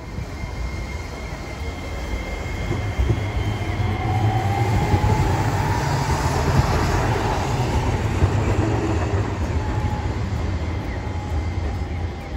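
A Hiroshima Electric Railway Green Mover Max (5100 series) low-floor tram passing close by on street track. Its rumble builds, is loudest in the middle as the car goes by, then fades as it pulls away. A faint whine rises and falls during the pass.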